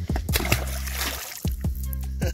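Background music with a steady beat and bass, over which a trout splashes into the lake about half a second in as it is dropped back over the side of a boat.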